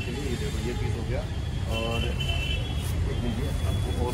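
Steady low background rumble with faint voices of people talking in the background.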